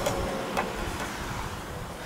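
Steady outdoor background noise with a low rumble, fading slightly, and a faint click about half a second in.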